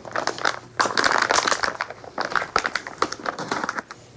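Crinkling and rustling of plastic packaging being handled, in quick irregular bursts.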